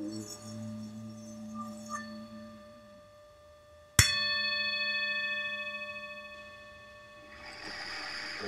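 Tibetan singing bowl struck once about halfway through: a sharp strike, then several high, steady ringing tones that slowly fade. Before the strike a lower, wavering tone dies away, and near the end a soft rushing swell rises.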